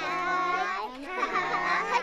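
Several children's voices shouting and laughing together at high pitch, in two loud stretches with a brief dip about a second in.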